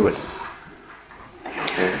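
A short pause in a man's speech in a small room: his voice trails off at the start, there is quiet room tone for about a second, and a man's voice starts again near the end.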